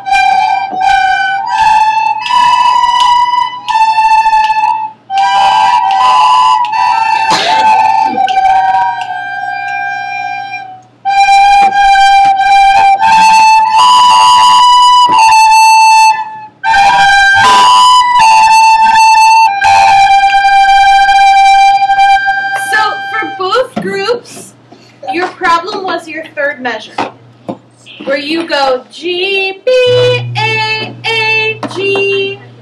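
A class of children playing recorders together, a simple tune of held notes, each lasting about half a second to a second, with short breaks between phrases. Near the end the playing falls apart into children's chatter.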